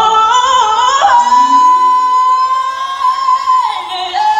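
A woman singing solo, holding one long high note for about two and a half seconds before it falls away near the end.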